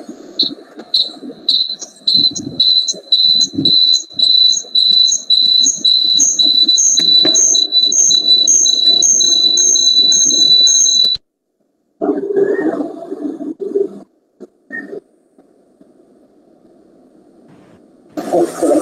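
A high-pitched electronic beep repeats about twice a second, each beep a little longer than the last, then cuts off suddenly about eleven seconds in. A short muffled noise follows, then faint hum.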